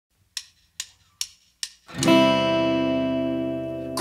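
Four short, evenly spaced clicks counting in the band, then a strummed guitar chord that rings out loud and slowly fades.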